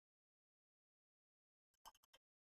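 Near silence, with a faint, short sound near the end.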